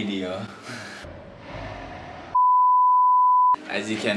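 A steady single-pitch censor bleep lasting about a second, starting a little past halfway through, with all other sound cut out beneath it so that a spoken word is blotted out.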